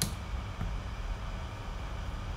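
Steady low background hum and hiss, with one short click right at the start.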